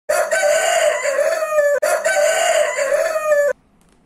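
Rooster crowing twice: two long cock-a-doodle-doo calls back to back, each under two seconds and each ending with a drop in pitch.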